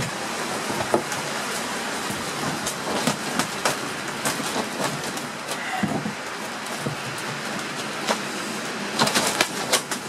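Steady wind noise with scattered sharp metallic clicks and taps as iron nails are worked out of an old oak boat frame with pincers; a quick cluster of sharper taps comes near the end.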